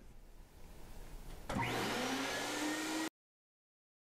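A silkscreen exposure unit starting up about a second and a half in: its vacuum pump spins up with a rising whine over a loud, rushing hiss. The sound cuts off suddenly a second and a half later.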